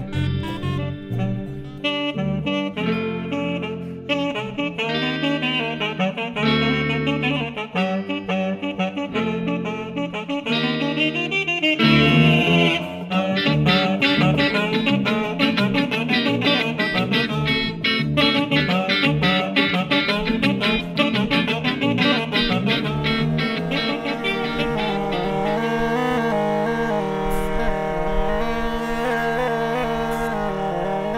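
Instrumental music on homemade recycled instruments: a home-built wind instrument carries a reedy, sax-like melody over guitar and a homemade upright bass. In the last few seconds a steady held note sounds under the melody.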